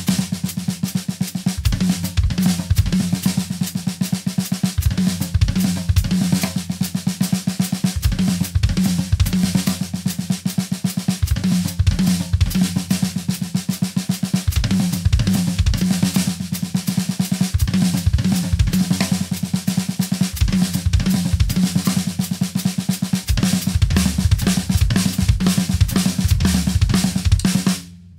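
Acoustic drum kit played in a fast, continuous run of snare and tom strokes with bass drum kicks falling in between, a short lick worked through as sextuplets. The playing stops suddenly at the end.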